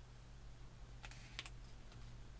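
A few short scratchy clicks about a second in, the sound of hands handling a lightweight foam glider fuselage, over a faint steady low hum.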